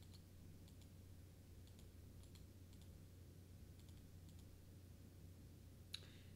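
Near silence: room tone with a steady low hum and a few faint computer mouse clicks.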